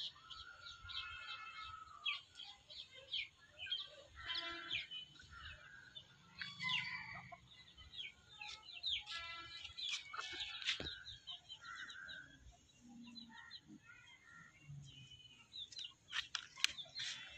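Domestic chickens calling: many short, high peeps from chicks mixed with hens' clucks, with a sharp click about eleven seconds in.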